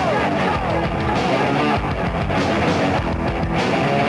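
Rock band playing live at full volume, with electric guitar and drum kit.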